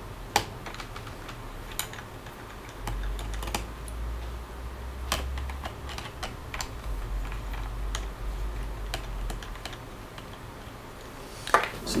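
Small screwdriver undoing the screws of a Toshiba Satellite A300 laptop's hard-drive bay cover: scattered light clicks and ticks of the driver and screws against the plastic case, with a low rumble in two stretches.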